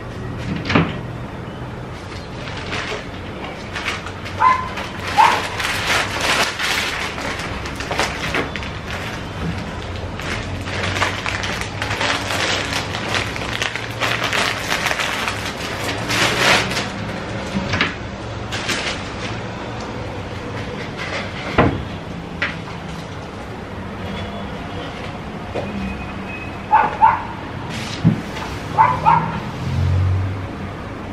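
Household cleaning noises: scattered knocks and clatters of things being handled, rustling of paper towel, and a few short squeaks, twice in pairs, about five seconds in and near the end.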